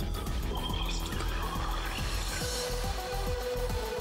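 Background music with a steady low bass.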